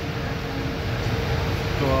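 Steady mechanical background hum and hiss with a faint steady tone running through it; a man's voice comes in at the very end.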